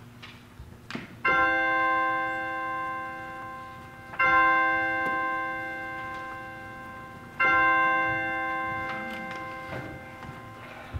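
A bell struck three times, about three seconds apart, each stroke the same note ringing out and fading away.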